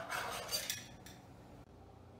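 Metal kitchen utensils clattering and clinking for about a second, handled on the counter beside the stove.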